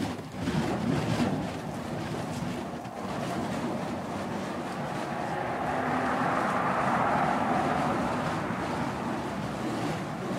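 Burning fire poi whirling through the air: a continuous rushing whoosh of the flames, swelling a few seconds past the middle.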